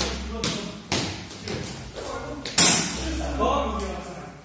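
Steel training longswords meeting in a sparring exchange, with hits on padded armour: a quick run of sharp knocks and clatters, the loudest about two and a half seconds in.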